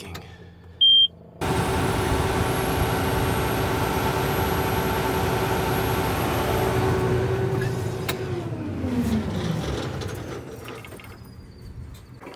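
John Deere S770 combine's diesel engine coming on suddenly after a short beep, running steadily for about six seconds, then shutting off, its pitch falling as it winds down.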